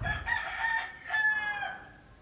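A rooster crowing: one crow in two drawn-out parts, the second part falling slightly in pitch at its end.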